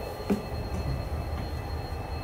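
A diesel-hauled passenger train standing at the platform with its engines running: a low, steady rumble, with one short knock about a quarter second in.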